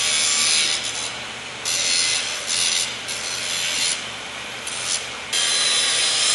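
Angle grinder cutting through the steel wire of a shopping cart, a loud high hiss. In the middle it drops away and comes back several times as the disc comes off and goes back onto the metal, then runs steadily again near the end.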